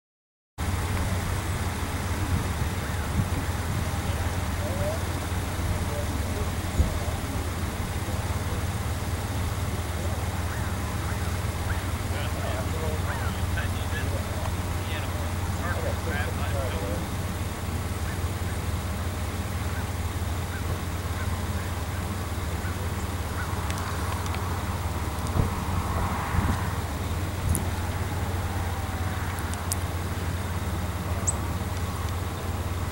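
Steady low outdoor rumble with faint distant voices and a few soft thuds, as two horses are walked on a dirt track.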